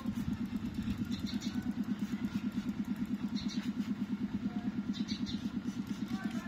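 An engine idling steadily with a fast, even pulse. Short hissing squirts from a trigger spray bottle aimed at the bicycle chain come about a second, three and a half seconds and five seconds in.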